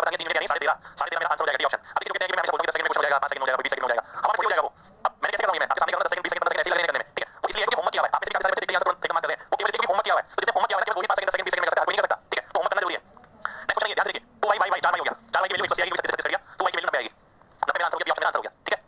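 Only speech: a man talking steadily in short phrases, explaining a maths problem.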